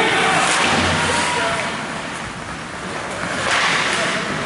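Ice hockey play at close range: skates scraping and carving on the ice and sticks working the puck along the boards, in a steady wash of noise that dips in the middle and swells again near the end, with spectators' voices mixed in.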